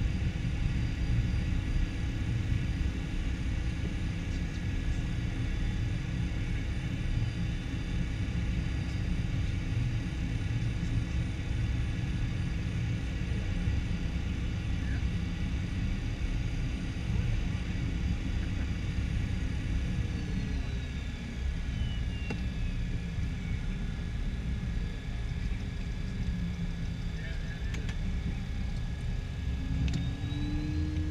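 Cockpit noise of a Cessna Citation V jet taxiing: the steady whine of its turbofan engines over a low rumble. About twenty seconds in, the engine tones fall in pitch as power comes back, and near the end a tone rises again as power is added.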